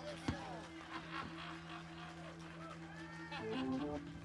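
Quiet lull on a live band stage between songs: a steady low hum from the stage with scattered crowd chatter, and a few soft instrument notes near the end.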